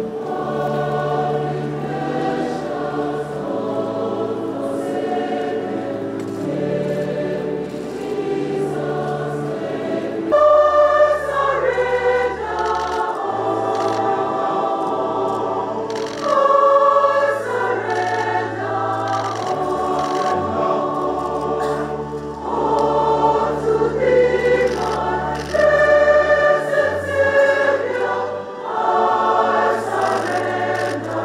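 A choir singing slowly in held chords over sustained low notes, the singing growing fuller and louder from about ten seconds in.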